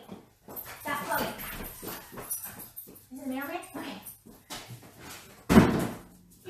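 A dog barking and whining, with indistinct voices in the background and one loud, sudden sound near the end.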